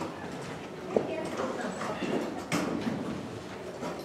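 Several people getting up from their chairs in a large hall: chairs knocking and scraping, with shuffling and rustling. Two sharper knocks stand out, about a second in and about two and a half seconds in.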